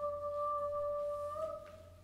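A woman's voice holding one long sung note, steady in pitch, lifting slightly near the end and then fading out.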